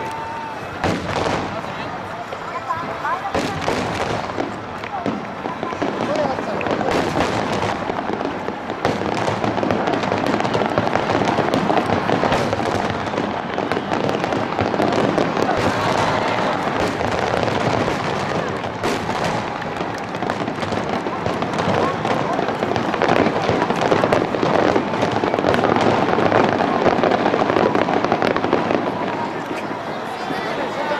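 Aerial firework shells bursting one after another in a display, a rapid run of sharp bangs. The bursts grow denser and louder from about six seconds in.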